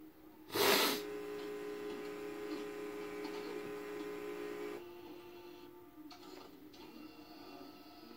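Blank start of a VHS tape playing through a TV: a short burst of hiss about half a second in, then a steady buzzing hum that drops in level about five seconds in.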